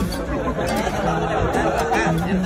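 Several people talking over one another in lively chatter, with no single clear voice.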